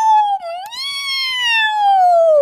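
A woman imitating a cat's meow in a high, drawn-out voice: one long call that dips and rises again about half a second in, then slides slowly down in pitch.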